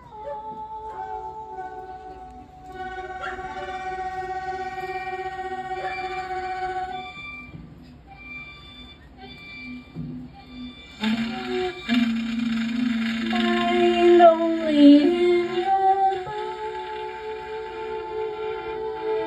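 Violin and saxophone playing slow, ambient music of long held, overlapping notes. About eleven seconds in it grows louder, with notes stepping and sliding in pitch, then eases back about five seconds later.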